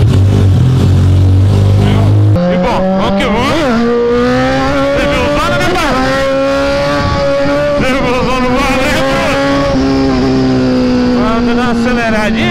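Kawasaki motorcycle engine idling low just after being started, then, after a cut about two seconds in, running at high revs under way, its pitch rising and dipping with the throttle.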